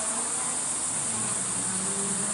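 Steady high-pitched hiss with a faint low hum beneath it, in a pause between speech.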